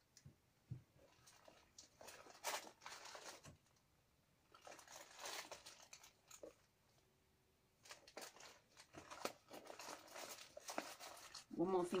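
Paper seed packets and sheets being handled and sorted: quiet rustling and crinkling in several stretches, with small taps and clicks.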